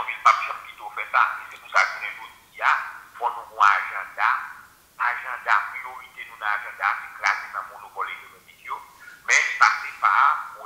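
A voice talking through a phone's small speaker, thin and tinny with no low end, in quick syllables.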